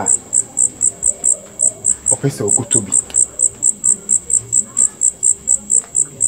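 Cricket chirping in short, even high-pitched pulses, about four a second. A voice murmurs briefly about two seconds in.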